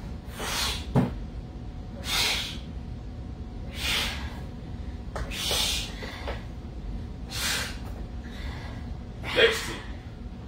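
Sharp, forceful breaths blown out in time with dumbbell chest-press reps, about one every one and a half to two seconds. A single sharp knock comes about a second in.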